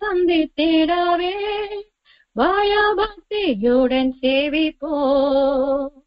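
A woman singing a gospel song solo, in phrases with wavering held notes. A short pause about two seconds in drops to silence, with no accompaniment heard under it.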